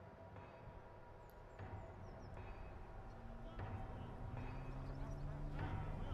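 Faint outdoor ambience: a low hum with a slowly rising tone and distant murmuring voices, growing gradually louder, with no blast or collapse heard.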